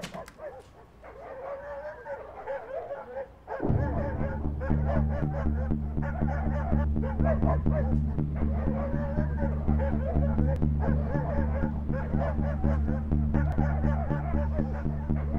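Film soundtrack music: wavering high whining tones, then a loud, steady low drone that comes in suddenly about three and a half seconds in and holds under them.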